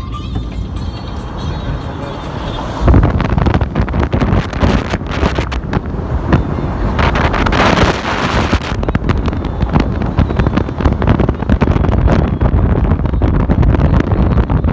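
Wind and road noise of a moving car, buffeting the phone's microphone held at the open side window. It jumps much louder about three seconds in and stays gusty.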